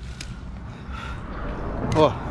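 A disposable lighter being struck to light dry grass tinder under a stack of twigs: a sharp click just after the start and another near the end, over a low steady rumble.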